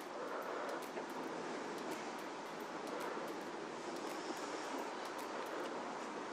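Steady low hiss of background noise with faint, scattered clicks.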